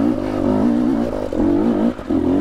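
KTM 250 EXC TPI single-cylinder two-stroke engine revving under load, its pitch wavering up and down with the throttle, with brief drops in revs a little over a second in and at the end.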